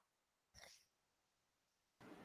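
Near silence: the audio is all but empty, with one faint, brief sound about half a second in.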